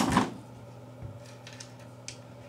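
AK-47 recoil spring assembly seated into the bolt carrier: one sharp metal click with a brief ring, followed by a couple of faint metal ticks.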